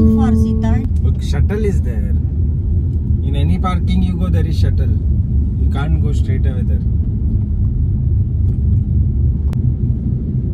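Steady low road and engine rumble inside a moving car's cabin, with quiet voices at times. A held music chord cuts off within the first second.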